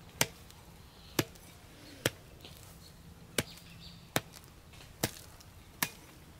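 Small hand hoe chopping into soil: seven sharp strikes, roughly one a second.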